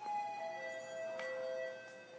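A bell-like electronic chime of three descending notes, each ringing on and overlapping the next before fading near the end.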